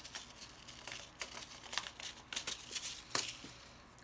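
Paper seed packet being handled, rustling and crinkling in a run of light, irregular crackles with a few sharper clicks.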